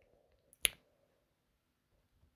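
A single short, sharp click about two-thirds of a second in, with near silence around it.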